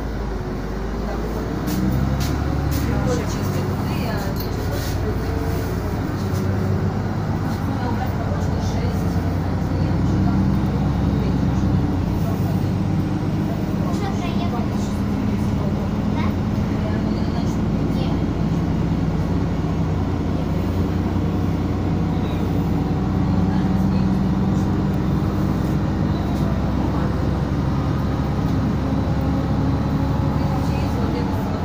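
City bus interior: the bus's engine drones steadily with road and tyre noise while the bus drives at speed. The noise swells about two seconds in, then holds steady.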